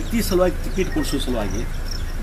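Insects chirping in short, high notes that repeat, under a man's speech.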